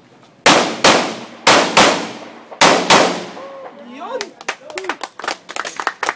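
Pistol fired six times in three quick pairs (double taps) in the first three seconds, each shot followed by a trailing echo. About four seconds in, voices and scattered hand clapping begin.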